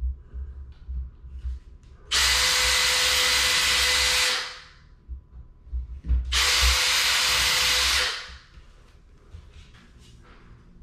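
Cordless drill boring two handle holes through a cabinet door guided by a drilling jig: two steady runs with a steady whine, each about two seconds long, about two seconds apart. Light knocks from handling the jig and drill come before and between them.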